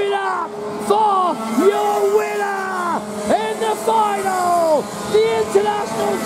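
Loud, excited voice in short, falling shouts over a steady low drone, with no clear words: race commentary. A kart engine may be buried under it.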